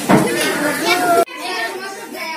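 Young children chattering and talking over one another; the sound breaks off abruptly a little past a second in and the chatter carries on more quietly.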